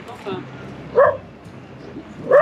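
A dog barking once, a short sharp bark about a second in.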